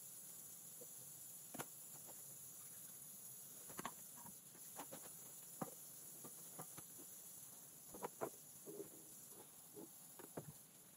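Faint, steady hiss of a thin stream of tap water running into a stainless-steel sink, with scattered light knocks and clicks as items are handled at the sink, a cluster of them about eight seconds in.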